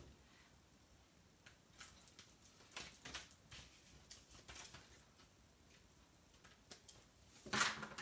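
Faint, scattered snips and rustles of cardstock being trimmed and handled, with a louder rustle of paper shortly before the end.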